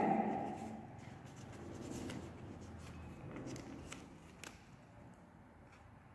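Faint rustling of a sheet of paper being folded and creased by hand, with a few soft crackles.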